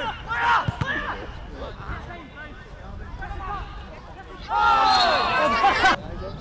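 Men shouting on a football pitch during play, with a dull thump under a second in. About four and a half seconds in, several voices break into a loud, sustained shout together.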